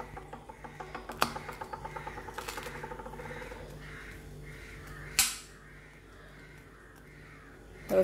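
Table knife sawing through a crisp toasted sandwich on a ceramic plate: a run of fine crunching scrapes, with a sharp click of the blade on the plate about five seconds in.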